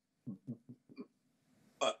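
A few short, low throat sounds in quick succession, about a fifth of a second apart, over a faint hum. Near the end a man starts speaking again.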